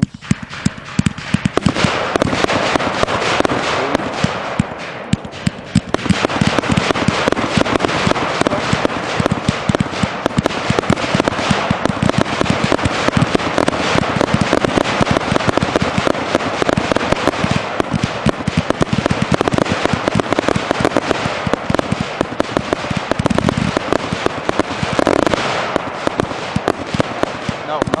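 A 30-shot consumer fireworks cake firing in rapid succession: a dense, unbroken stream of launch reports and aerial bursts with crackling from the white strobe effects. It builds up over the first couple of seconds and gets louder about six seconds in.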